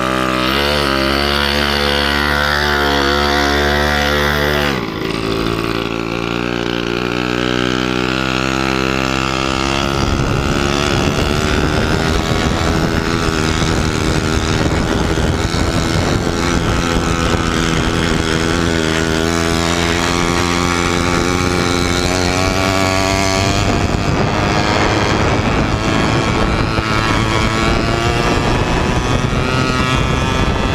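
Mini chopper's small engine running under way, its pitch shifting as it changes speed, with wind buffeting the microphone from about a third of the way in.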